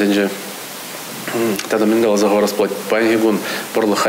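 A man speaking in an interview. Near the start there is a pause of about a second in which only a steady hiss is heard.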